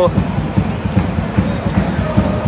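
Torrential rain pouring down, a steady rush of noise over a dense, uneven low rumble.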